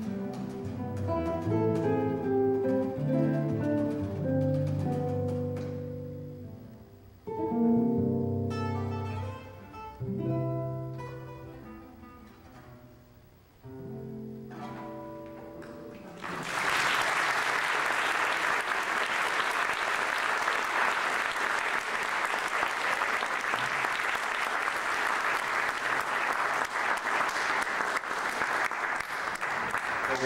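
Two acoustic guitars playing a jazz duet, with single-note lines and strummed chords, closing on a held final chord. About sixteen seconds in, audience applause breaks out and runs on steadily.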